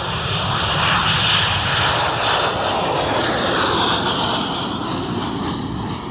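Jet engines of a Saab GlobalEye (Bombardier Global 6000 airframe) at takeoff power as the aircraft lifts off and climbs away: a steady loud roar that eases off toward the end, with a faint tone falling in pitch as it passes.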